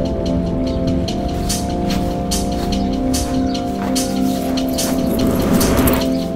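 Ambient background music of long held notes over a fast, light ticking pulse, with a hissing swell that builds near the end.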